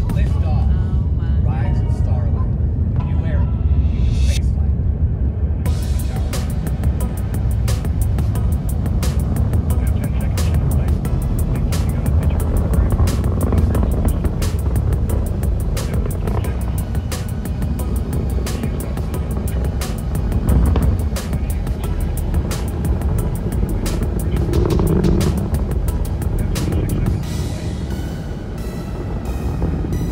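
Atlas V rocket's first-stage engine and two solid rocket boosters in ascent: a loud, deep, continuous rumble. From about five seconds in, a ragged crackle rides on top of it.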